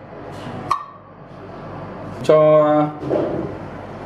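Quiet kitchen handling sounds: a short light clink with a brief ring less than a second in, over a faint steady hiss, then a man says a single word about halfway through.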